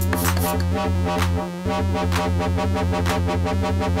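Live techno played on hardware synthesizers and drum machines: a steady pulsing bass and kick under a held synth chord. The hi-hats drop out about half a second in, and the bass briefly cuts out about a second and a half in before the groove resumes.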